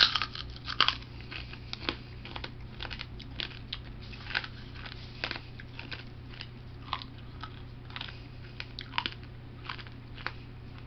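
A person chewing food, with irregular crunches and mouth clicks coming once or twice a second over a steady low hum.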